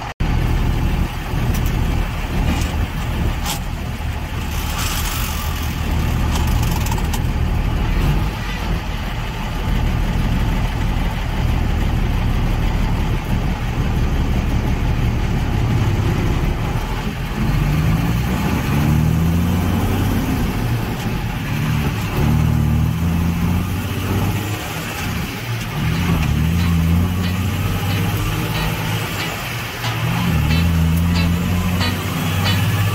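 Dump truck's diesel engine running under load, heard from inside the cab as it pulls a loaded trailer. From about 18 seconds in, the engine note repeatedly climbs and then drops back as it works up through the gears.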